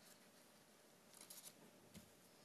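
Near silence: room tone in a lecture hall, with a faint brief rustle a little past the middle.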